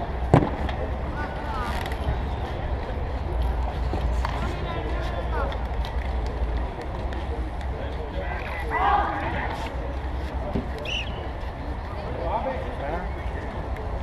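Wind rumbling on the microphone over the rolling of bike tyres on a concrete court, with a single sharp knock just under half a second in. Distant shouts from players and onlookers come through, loudest about nine seconds in.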